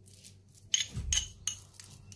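A metal spoon clinking against a small glass bowl while mixing thick soybean paste: several light, separate clinks, with a dull low thump about a second in.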